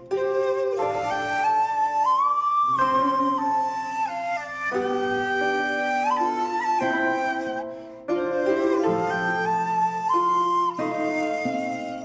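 Pan flute playing a slow melody of long held notes that slide between pitches, over a soft sustained backing. The phrase breaks off briefly about two-thirds of the way through, then carries on.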